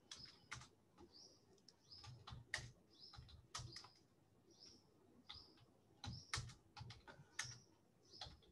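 Faint typing on a computer keyboard, irregular clusters of keystrokes as numbers are entered. Short high chirps, like a small bird's, recur throughout over the typing.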